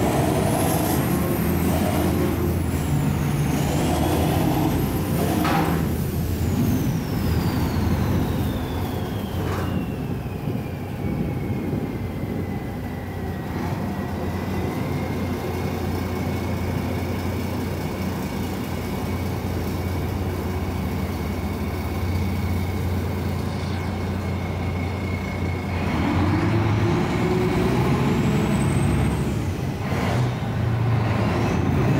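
The ship's twin 540 hp Yuchai marine diesel engines running under way, a steady low drone. A high whine falls in pitch a few seconds in, holds, and rises again near the end as the engine note climbs, as the throttle is eased and then opened.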